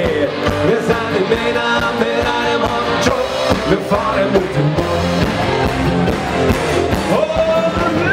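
A live Bavarian party band playing loud rock-style music with singing.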